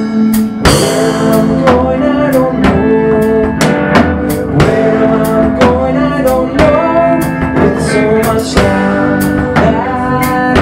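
Blues-rock band playing: electric guitars and bass guitar over a drum kit with a steady beat, some notes bent in pitch.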